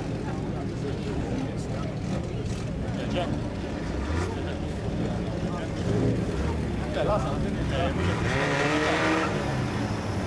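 A hillclimb car's engine revving as it approaches, growing louder from about halfway through, with people's voices close by.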